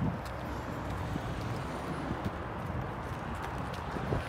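Footsteps on asphalt pavement, faint and irregular, over a steady low outdoor rumble.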